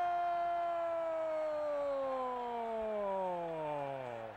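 A TV football commentator's long drawn-out "gol" shout for a goal: one held note that slides slowly down in pitch and trails off at the end.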